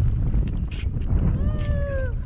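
A golden retriever whining once, a single high held whine that slides down at the end, heard over a steady low rumble of wind on the microphone.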